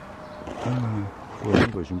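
A man's low voice: two short drawn-out utterances, the second louder, over a faint steady tone.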